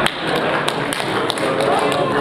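Scattered hand claps, several sharp, irregular claps from a few people, with voices underneath.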